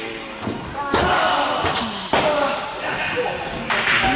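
Tennis ball struck by racquets in a rally, three sharp hits about a second or more apart.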